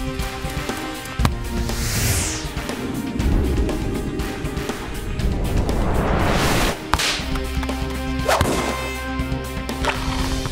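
Cartoon sound effects for a soccer ball in flight: a falling whoosh about two seconds in, then a long rising whoosh that cuts off suddenly near seven seconds, followed by sharp whip-like hits as the ball reaches the goal. Background music plays underneath.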